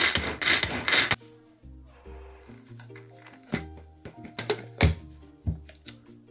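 Tupperware pull-cord food chopper being worked with its blades in: rapid rasping pulls of the cord, about two a second, that stop about a second in. Then gentle background music.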